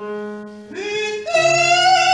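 A female soloist singing in operatic style with a choir and piano. The music starts abruptly on held notes, then a long sung note with vibrato swells louder about a second and a half in.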